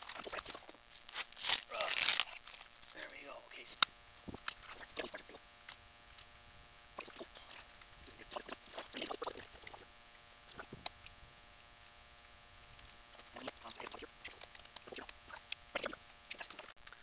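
Gloved hands handling sealed lead-acid batteries and their wiring: plastic wrapping and tape rustling and crinkling, with scattered clicks and taps of terminals, wires and clips. The loudest rustling comes about two seconds in, with a sharp click near four seconds.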